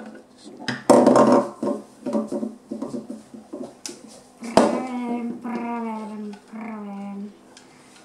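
A child's voice making drawn-out sounds without clear words, together with a few sharp clicks of plastic toy pieces being set into a toy playhouse.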